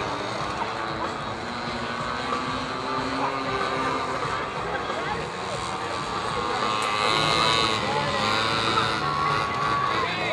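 Small minibike engines buzzing round a dirt track, their pitch rising and falling as they rev, with people's voices mixed in.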